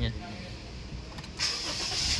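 A Honda car's engine being started with the push-button: a short crank, then the engine catches and runs with a sudden rise in sound about one and a half seconds in.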